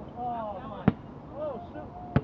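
A basketball strikes something once, sharply and loudly, about a second in, while players shout on the court.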